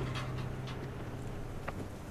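Quiet background ambience: a low steady hum with a few faint scattered rustles and soft clicks.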